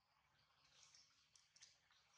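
Near silence: faint high-pitched background hiss, with a couple of faint clicks near the end.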